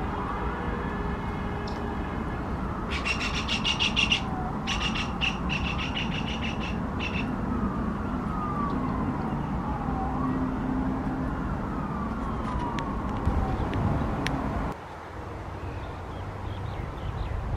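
A distant siren wailing, its pitch sweeping down and up again and again, over a steady low traffic rumble. From about three to seven seconds a rapid, pulsed high chattering call sounds over it. The sound drops away abruptly near the end.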